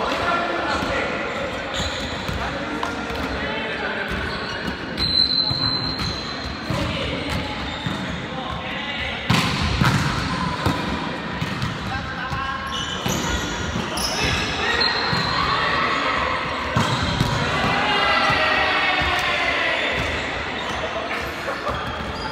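Volleyball being struck during a rally, a few sharp hits of hand and forearm on the ball, the loudest about nine seconds in, echoing in a large gym hall. Players' voices call out around the play.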